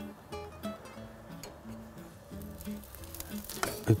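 Zucchini slices sizzling faintly on a hot grill grate, with soft background guitar music playing short held notes over it.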